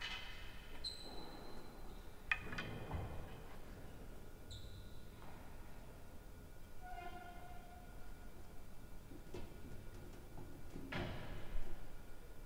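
Players' shoes squeaking and scattered knocks on a real tennis court between points: a few short high squeaks and sharp knocks in the echoing court, the loudest knock just before the end.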